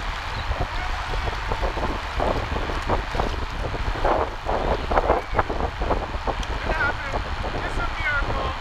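Steady low wind rumble buffeting the microphone, with indistinct voices coming and going over it.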